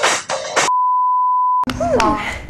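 Music cuts off abruptly, replaced by a single steady electronic beep tone of about 1 kHz that lasts about a second. A voice comes in near the end.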